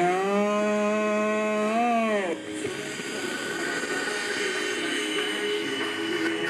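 A man's long drawn-out shout of a single word: it rises in pitch, holds for about two seconds, then bends up and drops away.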